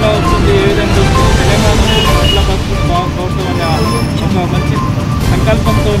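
A man speaking Telugu into microphones over a steady background of street traffic.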